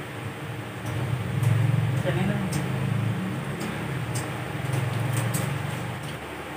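Low, indistinct talk starting about a second in, with a few faint clicks.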